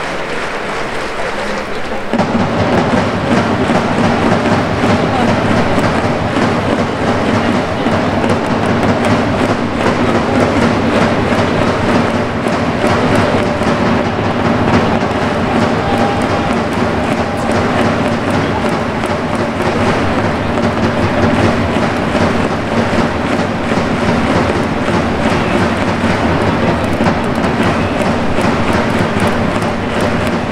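Baseball stadium cheering: loud music with a beat and rhythmic crowd noise, starting abruptly about two seconds in and carrying on steadily.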